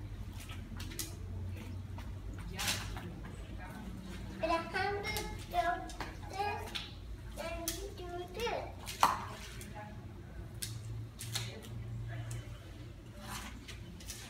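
A small child's high voice babbling without clear words, with scattered knocks and taps from a mop being worked over a wet concrete floor, over a steady low hum.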